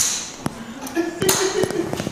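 A few sharp clicks and taps with a faint high ring, from glass bottles and cups being handled on a table while drinks are mixed; a voice murmurs briefly halfway through.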